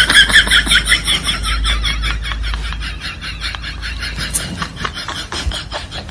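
A kitten's claws scrabbling and tapping on a front-loading washing machine's door rim and drum as it climbs in: a fast run of small scratchy clicks.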